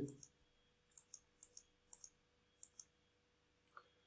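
Faint computer mouse button clicks, about eight short clicks at irregular intervals, some in quick pairs, as buttons on an on-screen calculator are pressed.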